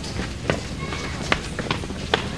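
Scattered footsteps of several people setting off at a jog on a dirt path, a few separate footfalls over a steady low background hum.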